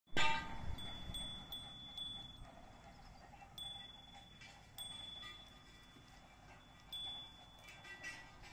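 High, clear metallic chime notes: a sharp ringing strike at the very start, then single notes struck irregularly every second or two, each ringing on for about a second.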